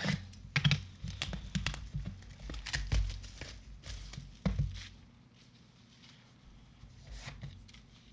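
Clear plastic shrink-wrap being torn and peeled off a cardboard trading-card box, a rapid run of crackles and taps that thins out and grows quieter after about five seconds.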